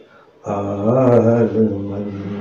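A man's voice chanting a line of Sindhi poetry in a slow, sung melody; after a brief pause, one long drawn-out phrase begins about half a second in.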